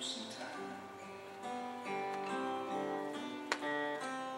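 Acoustic guitar being strummed and picked, its chords ringing and changing every half second or so, with one sharp strum near the end.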